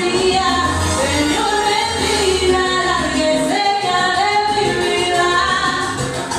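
A woman singing karaoke through a microphone over a backing track, at a steady loud level.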